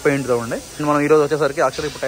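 A man's voice talking.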